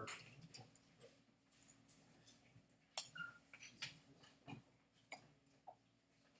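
Near silence with scattered faint clicks and taps, and a brief faint squeak about three seconds in.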